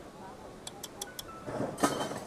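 Chopsticks and a piece of fish clinking against a hotpot and a ceramic bowl: a few light ticks about a second in, then a louder clatter near the end as the fish head is set into the bowl.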